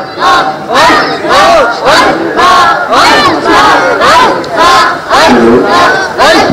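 Congregation of men chanting zikr together, a loud rhythmic shout of "Allah" repeated about twice a second.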